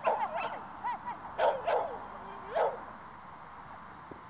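A schnauzer barking while running an agility course: about six short, high barks in quick succession over the first three seconds, then they stop.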